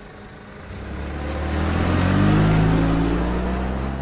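A car's engine running as the car moves close by. It grows steadily louder to a peak a little past halfway, then eases off.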